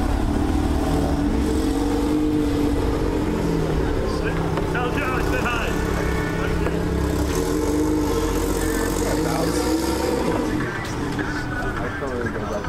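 A car engine running at a steady, held speed for about ten seconds, then easing off near the end, with people talking over it.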